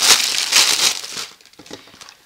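Clear plastic bag crinkling as it is handled and pulled off. It is loud for a little over a second, then dies down to a faint rustle.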